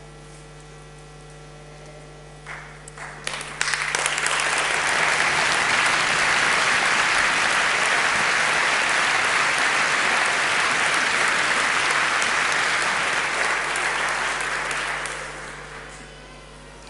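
Audience applause: a few scattered claps about two and a half seconds in, then full, steady clapping from a large crowd that dies away near the end.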